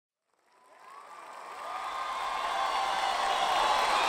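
Concert crowd cheering, with high voices calling out, fading in from silence about half a second in and growing steadily louder.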